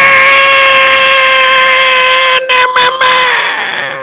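A man's long, high-pitched shout held on one steady note for about three and a half seconds, dropping slightly in pitch as it fades out near the end.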